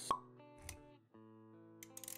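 Animated-intro music with sound effects: a sharp pop just after the start, a thud a little later, then the music cuts briefly and resumes with quick clicks near the end.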